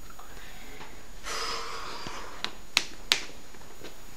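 A short noisy breath about a second in, followed by three sharp clicks in quick succession, over steady recording hiss.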